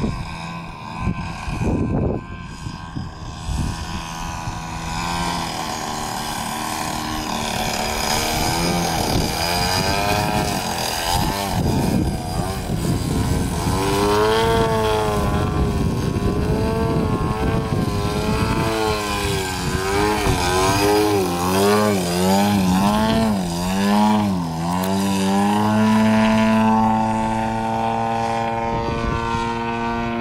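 Yak-55 aerobatic plane's engine and propeller during aerobatic flight. The pitch swings up and down again and again through the middle, then holds steady near the end.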